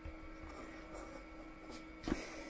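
Felt-tip pen writing on squared paper, faint, over a faint steady hum.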